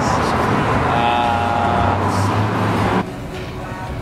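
City street traffic noise, with a car driving past close by and some voices mixed in. It stops suddenly about three seconds in.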